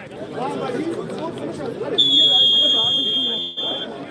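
Referee's whistle blown for kickoff: one long, steady blast about two seconds in, lasting nearly two seconds, over crowd chatter.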